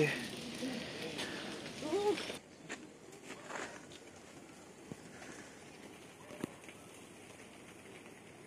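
A person's voice speaking softly for the first two seconds, then a faint outdoor background with a few soft clicks.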